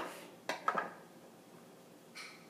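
Two quick knocks of a kitchen knife against a cutting board as it cuts through the stem end of a strawberry, about half a second in.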